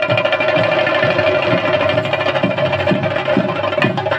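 Traditional Kerala temple music played live: drums beating in a fast, busy pattern under a steady, held high tone from a wind instrument.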